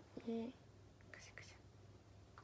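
A young woman's voice: a short spoken syllable, then a soft whisper about a second in, over a faint steady low hum.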